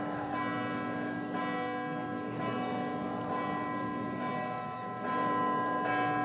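Church bells ringing, heard as a steady wash of many held, ringing pitches.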